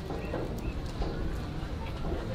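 Footsteps on hard ground, with faint voices in the background.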